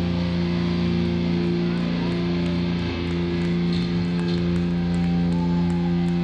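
Amplified electric guitar holding one steady, droning chord in a live metal band, left ringing with no drum beat under it.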